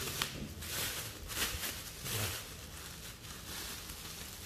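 Plastic bubble wrap rustling and crinkling as it is unwrapped by hand, busiest in the first couple of seconds and quieter toward the end.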